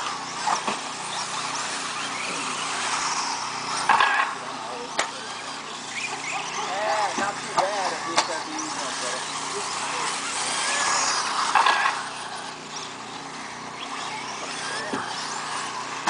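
Electric 1/10-scale 4WD RC buggies racing on a dirt track: motor whine rising and falling as the cars accelerate and brake, with a few sharp clicks. Afterwards one car is said to sound like it runs a brushed motor.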